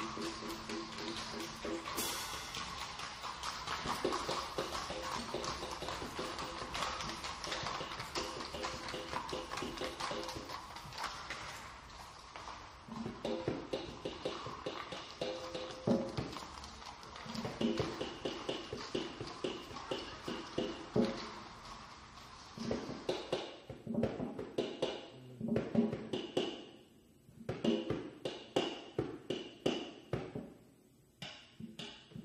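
Live jazz trio of grand piano, upright bass and drum kit playing. About halfway through, the full texture thins to sparse tapped percussion and separate bass and piano notes with short gaps.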